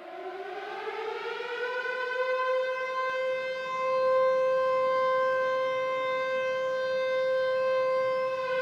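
Air-raid-style siren tone opening a drum and bass mix. It winds up in pitch over the first two seconds or so, then holds one steady note and grows louder.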